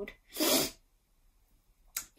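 A woman's single short sneeze, a burst of breath noise about half a second long, brought on by hay fever.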